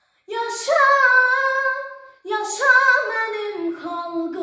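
A girl singing alone in Azerbaijani, with no accompaniment: two long held phrases of about two seconds each, with a short silent break between them.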